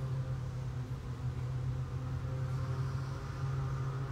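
Lawn mower engine running steadily outside the door, a low even hum with no change in pitch.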